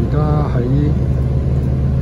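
Steady low engine and road rumble of a city bus, heard from inside the cabin while it is moving.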